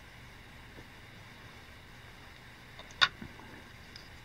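Quiet room tone, then one sharp snip about three seconds in: fine fly-tying scissors closing as they trim off the excess calf-tail hair butts.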